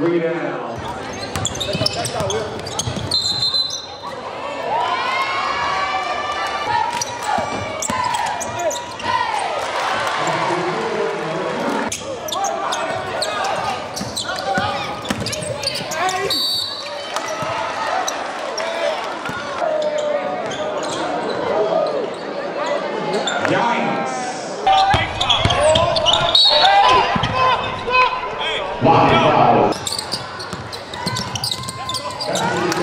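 Game sound in a basketball gym: many voices and shouts, echoing in the hall, with a basketball bouncing on the court. It gets louder for a few seconds near the end.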